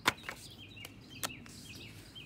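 Small birds chirping in the background, a string of short high chirps. A sharp click comes right at the start, and a fainter one a little past a second in.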